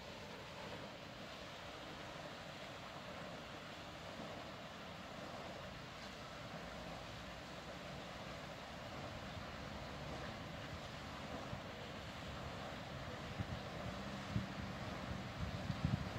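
Steady outdoor background hiss with no distinct events, and a few low thumps near the end.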